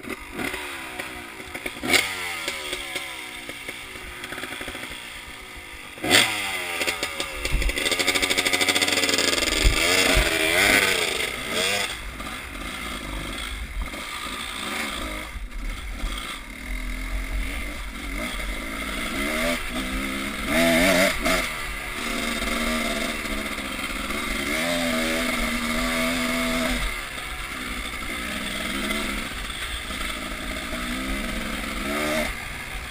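Two-stroke Husqvarna enduro motorcycle being ridden over rough ground, its engine revving up and down again and again. Sharp knocks and rattles from the bike over bumps, loudest about two and six seconds in.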